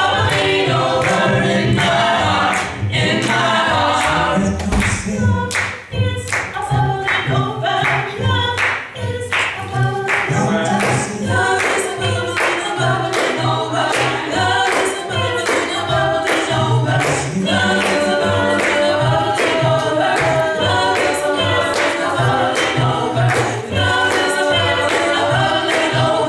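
Gospel choir of mixed voices singing an upbeat gospel song, over a steady beat of about two sharp hits a second.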